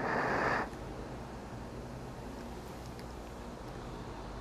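A short slurping sip of espresso from a small glass, lasting about half a second, then quiet room tone with a faint steady hum.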